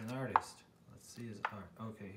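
Pages of a large paperback book being turned by hand, with about three sharp paper snaps as the pages flip over.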